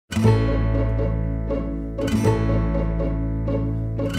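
Background music: a plucked string instrument playing quick notes over steady low held tones, with a stronger accented note about every two seconds.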